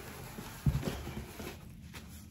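Handling noises from a person shifting and reaching off to one side: a dull thump a little under a second in, followed by a few lighter knocks and faint rustling.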